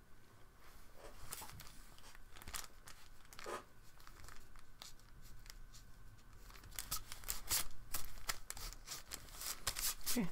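Mechanical pencil scratching on paper in short, quick strokes, sparse at first and denser and louder from about seven seconds in, with some rustling as the taped sheet is shifted on the desk.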